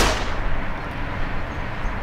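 A loud booming impact right at the start, its rumbling tail dying away steadily over about two seconds: a cinematic hit sound effect on a cut to black.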